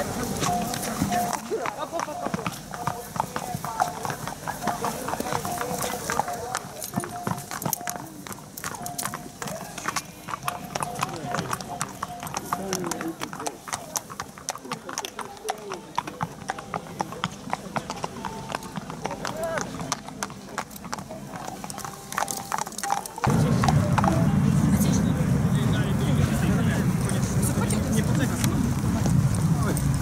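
Racehorses' hooves clip-clopping at a walk on hard ground as they are led, a stream of sharp irregular clicks. About 23 seconds in, the sound cuts suddenly to a louder, steady low noise.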